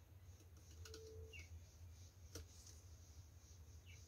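Near silence: a steady low hum with a few faint clicks and small handling noises.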